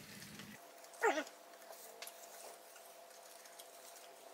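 A short 'mm' falling in pitch about a second in, a person's murmur of approval with a mouthful of food. Otherwise only faint room hum.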